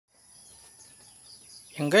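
Faint, steady, high-pitched trilling of insects such as crickets, then a man's voice starting near the end.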